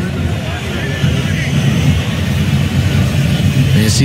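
Steady low rumble of football-stadium ambience on a match broadcast, with faint voices in it.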